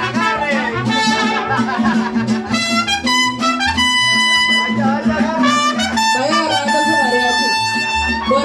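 Live mariachi band playing: trumpets over strummed guitars and a pulsing bass line, with long held trumpet notes in the middle.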